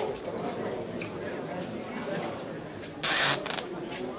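Indistinct background voices with a few light clicks, and a short loud burst of hiss about three seconds in.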